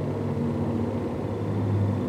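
Steady low rumble of a running motor, with a hum that drifts a little in pitch and grows slightly louder near the end.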